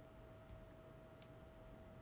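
Near silence: room tone with a faint steady tone and one or two faint clicks.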